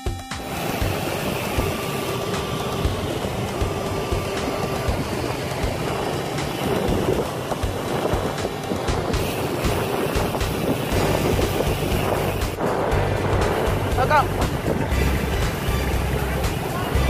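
Steady wind rushing over the microphone of a camera carried on a moving bicycle, with road and traffic noise beneath.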